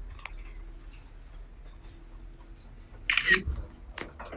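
Quiet room tone, then about three seconds in a short, loud burst of hiss with a low thump at its end: a camera-shutter-like transition sound effect at a glitch cut.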